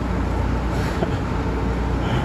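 Steady low background rumble with no speech, level and unbroken.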